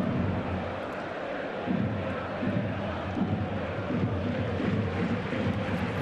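Football stadium crowd noise from a match broadcast: a steady hum of many voices, with faint singing or calls rising out of it from about two seconds in.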